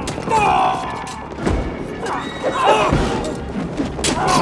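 Film fight-scene soundtrack: dramatic score under shouts and screams, with heavy punch impacts about three times, roughly a second and a half apart.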